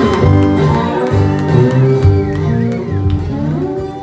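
Acoustic guitar playing the closing phrase of a slow blues song, easing off slightly near the end.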